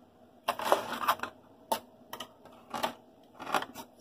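A metal knife scraping and knocking against a disposable aluminium foil pan in a series of short strokes, as hot dogs and sausages stuck to the foil are pried loose and rolled over.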